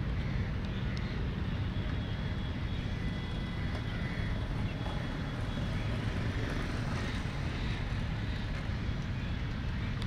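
Steady outdoor background noise on an open cricket ground: a continuous low rumble with faint far-off voices and a few faint clicks.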